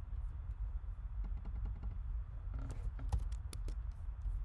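Computer keyboard keys clicking as a short run of key presses, mostly in the second half, over a steady low rumble.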